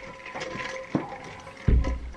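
Handling noise while carrying a metal bowl of ice water: a few light clicks and knocks in the first second, then a low thump near the end as a bedroom door is pushed open.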